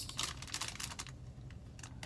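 Plastic packaging of a pack of cotton buds crinkling and clicking as it is handled in the fingers: a quick run of small clicks in the first second, then only a few faint ones near the end.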